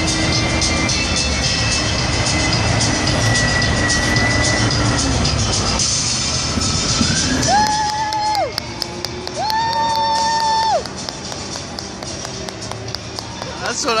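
Loud arena sound: music over the public-address system mixed with crowd noise. About eight and ten seconds in come two long held horn-like tones, each dropping in pitch as it ends, after which everything gets quieter.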